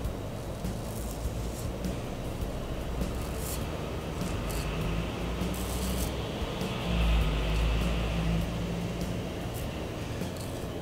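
Merkur 34G double-edge safety razor scraping stubble off a lathered scalp in a series of short strokes, over quiet background music.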